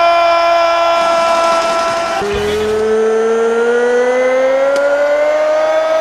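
A ring announcer's long, drawn-out shout into a microphone, held as two sustained notes: the first steady for about two seconds, the second rising slowly in pitch for about four seconds.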